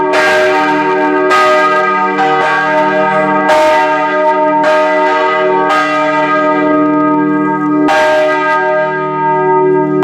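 Four church bells cast by Emil Eschmann in 1967, tuned E-flat, G, B-flat and C, swinging in full peal, heard close up in the belfry. Clapper strokes fall unevenly about once a second, overlapping, each stroke ringing on into the next.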